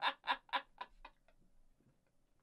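A person laughing, a run of short, even 'ha' pulses that fade away and stop about a second in.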